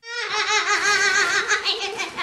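A young girl shrieking with laughter, high-pitched and wavering, starting suddenly.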